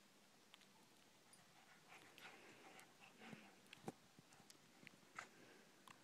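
Near silence with faint sounds from two dogs playing in the snow at a distance: a soft scuffle about two to three and a half seconds in and a few small clicks.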